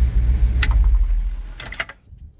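1990 Chevy pickup's engine idling just after being started through a newly wired aftermarket dash ignition switch, with sharp key clicks in the switch about half a second in and again near the end. The engine's low rumble fades out over the second half.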